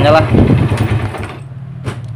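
Yamaha Jupiter Z's single-cylinder four-stroke engine running with a rough 'gredek-gredek' rattle. The owner suspects the cam chain tensioner, a crankshaft bearing or the centrifugal clutch linings. The engine grows quieter about a second and a half in, and a sharp click sounds near the end.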